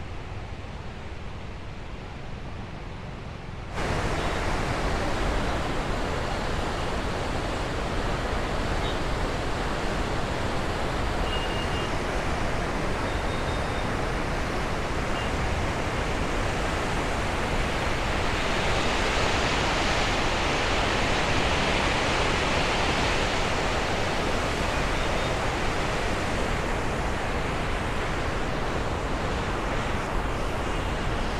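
River water rushing and churning through the Teesta Barrage outflow, a steady whitewater rush that gets louder and fuller about four seconds in.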